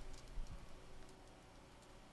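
Faint low hum with one soft click about half a second in, fading toward near silence.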